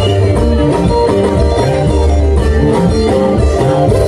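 Live church band music with a lead guitar line playing over a steady, deep bass.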